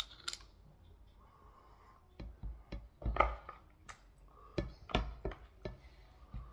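A fork working saucy goat head meat on a plate: two sharp clicks right at the start, then from about two seconds in a string of clicks and clinks against the plate mixed with wet, sticky sounds from the meat.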